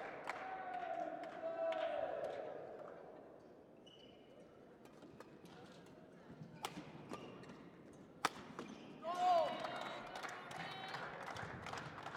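Badminton rally: a few sharp cracks of rackets striking a shuttlecock, the loudest about eight seconds in. Voices rise about a second later as the point ends.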